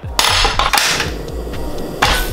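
A metal frying pan clanking onto the grate of a portable butane stove, with the click and hiss of the stove being lit.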